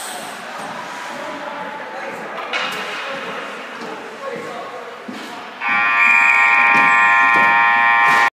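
Ice rink scoreboard horn sounding loud and steady, starting about five and a half seconds in and holding to the end. Before it, the rink's low background of skates and distant voices.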